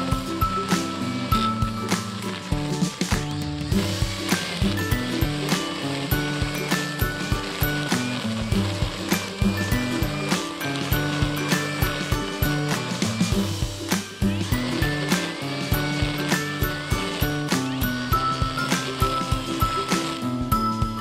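Background music with a steady beat and a stepping melody.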